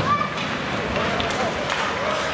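Ice hockey game sound in a rink: a steady wash of arena noise, with distant shouts from players or spectators and a few faint sharp clicks of sticks and puck.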